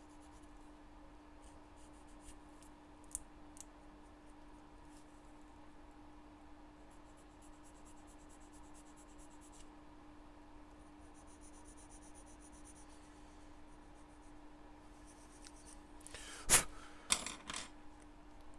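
A fine file scraping lightly on a small, brittle plastic gun-shield part in several short runs of quick, faint strokes, levelling its bottom edge. Near the end come a few sharp clicks, the loudest sound.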